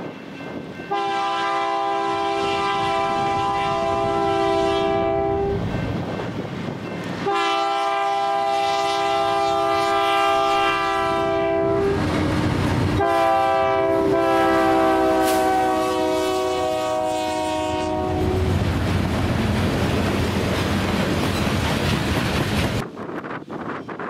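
BNSF GE C44-9W diesel locomotive's multi-chime air horn sounding the grade-crossing signal, long, long, short, long, the last blast held longest. The locomotive and train then rumble past close by, and the sound cuts off suddenly near the end.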